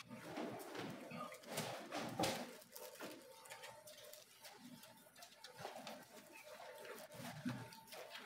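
Faint paper rustling of Bible pages being leafed through, a scatter of soft rustles and small clicks.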